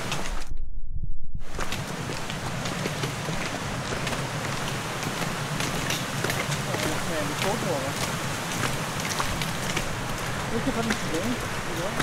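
Steady rush of wind and movement noise on a body-worn camera microphone while running on a wet forest trail, with many light footfall ticks and faint voices. The sound drops out briefly about half a second in.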